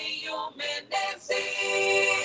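A short music jingle with a sung, synthetic-sounding voice: two brief notes, then one long held note from just past halfway.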